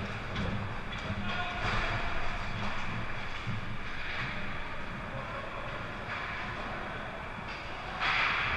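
Ice hockey rink sound: skates scraping and carving on the ice over steady arena noise, with distant voices from players and spectators.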